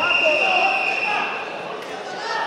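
A whistle blown in one long, steady, high note lasting about a second and a half, over shouting voices in the hall.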